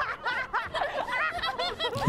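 A young woman laughing, a quick run of short, high-pitched "ha-ha" notes.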